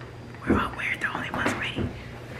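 Soft, whispered speech, starting about half a second in; the recogniser caught no words in it.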